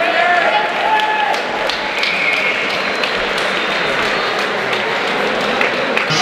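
A crowd of spectators cheering and shouting, with scattered clapping, and voices calling out loudly over the din.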